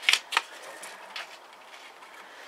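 A few short, light clicks and rustles of handling, two close together at the start and one softer a second later, over a faint hiss.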